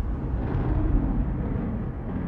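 Deep, steady rumble of a logo sting sound effect, low and noisy with no clear pitch.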